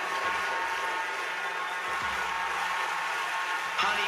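Bassline house / speed garage dance track playing in a DJ mix: a vocal-free passage of steady held synth tones over a low bass.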